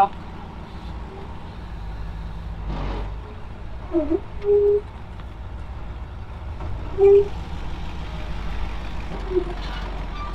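Ford wrecker's engine idling with a steady low rumble, with a brief rattle about three seconds in.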